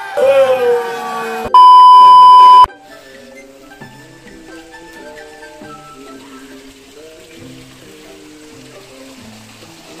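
A voice briefly at the start, then a loud, steady edited-in beep tone lasting about a second, followed by quiet background music with stepped notes.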